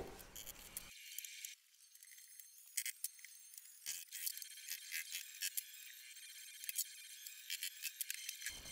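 Faint, thin metallic clicks and clinks of hand tools working on old wooden carlins, a handful of them scattered through the middle. The sound is tinny, with nothing in the low end.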